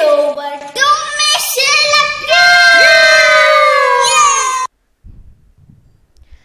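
A child's high-pitched voice calling out in drawn-out sing-song phrases, the last note held for about two seconds and slowly falling in pitch before it cuts off suddenly.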